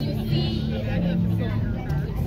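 Faint background voices in a room over a steady low hum.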